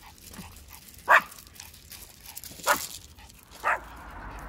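Dog barking three times, short sharp barks with the first the loudest.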